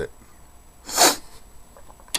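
A single short, hissy breath-like burst from a person about a second in, such as a sniff or a small sneeze.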